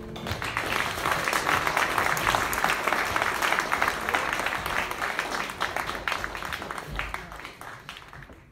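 Audience applauding at the end of a live jazz band piece, the clapping dying away over the last couple of seconds.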